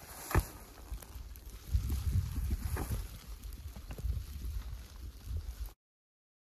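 Wind rumbling and buffeting on the microphone, with scattered clicks from skis and poles in snow and a sharp knock about half a second in. The sound cuts off suddenly near the end.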